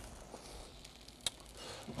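Quiet room tone with a single short sharp click about a second and a quarter in.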